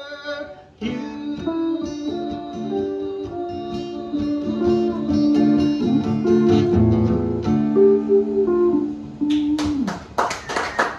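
Electric archtop guitar and acoustic guitar playing the instrumental end of a song, held lead notes over strummed chords. The music starts about a second in and stops just before the end on a note that slides down in pitch, as clapping begins.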